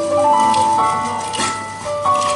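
Children's choir singing in several voice parts, holding notes that change together about every half second, with crisp consonants between them.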